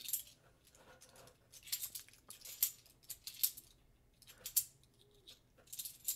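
Half-dollar coins clinking against one another as they are handled by hand. The clinks are short, sharp and irregular, a few louder ones spread through the stretch.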